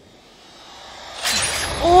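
Film sound effect of a thrown spear in flight: a whoosh that swells for over a second, then a sharp crack past the middle with a low rumble under it. A woman's voice breaks in near the end.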